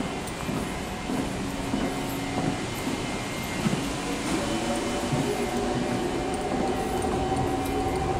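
Steady machinery hum over continuous room noise, with several held tones and no sudden events.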